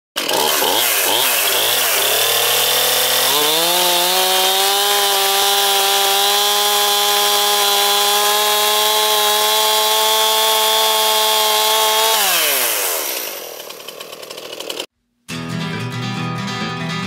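Stihl two-stroke chainsaw revved up and down a few times, then held at a steady high rev for about eight seconds before the throttle is let off and the engine note falls away. Near the end, after a brief dropout, music begins.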